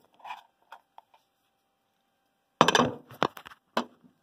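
Handling noise of a phone set down on a table and picked up again: a few light taps, a silent pause, then a loud scrape and knock against the microphone about two and a half seconds in, followed by two sharp clicks.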